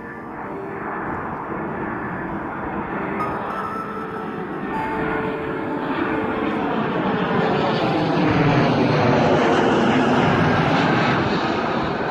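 Twin-engine jet airliner on landing approach with its gear down, the jet engine roar swelling steadily as it comes low overhead, loudest near the end and just beginning to fade.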